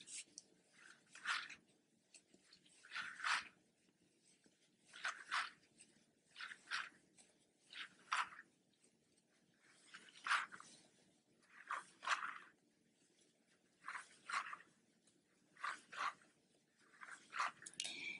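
A cord on the Tunisian crochet work brushing and tapping against the filming board as the return pass is worked. It makes faint, short scratchy rustles, about a dozen of them, coming every second or two.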